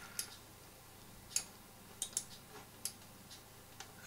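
A few faint, sharp clicks of a computer mouse and keyboard, about six of them spaced irregularly, over quiet room tone.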